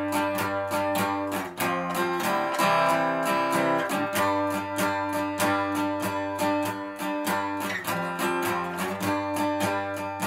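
Steel-string acoustic guitar strummed slowly in an even down-up quaver pattern, backing an Irish reel. The chords change a quaver before the beat, and the first strum on each new chord is slightly louder to mark the change, giving a stuttering, syncopated feel.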